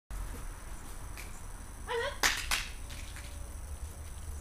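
A puppy gives one short, high yelp about halfway through. Right after it come two sharp clicks about a quarter second apart, the loudest sounds, over a steady low rumble.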